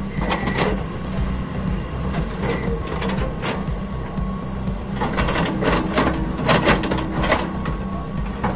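Diesel engine of a tracked excavator running steadily as its bucket digs into an earth bank. Scattered clanks and scrapes of soil and stones come through, most of them in the second half.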